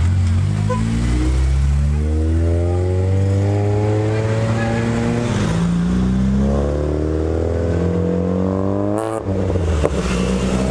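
Small petrol car engines accelerating hard past the camera, one car after another. The pitch climbs in about three rising sweeps, the last one the steepest, and cuts off sharply about nine seconds in.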